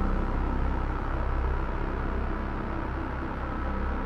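Steady low engine rumble, a vehicle sound effect in a rock song's intro, setting up a police-style surrender command.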